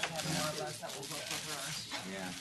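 Indistinct conversation: people's voices talking in a room, too unclear to make out words.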